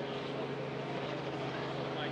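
Steady outdoor background noise with a low, even hum running under it. No distinct event.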